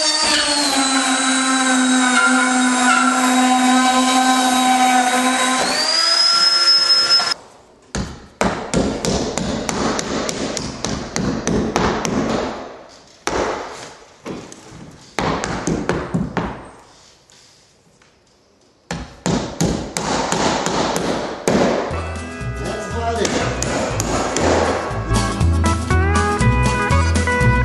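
Handheld drywall router running with a steady high whine as it trims the overlapping edge of a drywall sheet, its pitch rising just before it stops about seven seconds in. Then a hammer drives nails into the drywall in irregular blows, and guitar music starts near the end.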